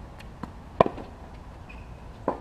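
Tennis ball impacts during a rally on a hard court: a faint pop, then a sharp, loud pock a little under a second in, followed at once by a smaller knock.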